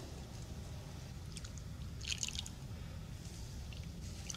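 Fresh cream poured from a jug into a bowl of egg yolks: a faint, soft liquid pour with a few light ticks around the middle.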